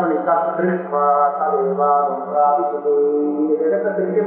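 A man chanting Sanskrit verse in a steady recitation tone, holding long syllables on even pitches.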